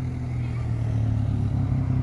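Car engine running at a steady low hum, heard from inside the car's cabin.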